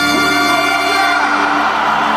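Live Colombian popular-music band holding a final chord on accordion and keyboard, which stops about a second and a half in as crowd cheering and whooping swells.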